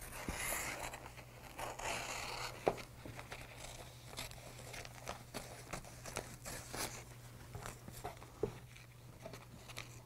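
Scissors snipping through paper-backed Heat Bond fusible web, with faint irregular snips and paper crinkling as the sheet is handled, over a low steady hum.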